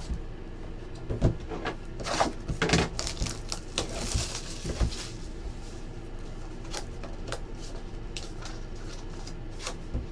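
Small cardboard trading-card boxes being handled on a tabletop: several light knocks as boxes are set down and moved in the first few seconds, then a longer rustle of cardboard being slid and opened around four to five seconds in, with faint scattered taps after.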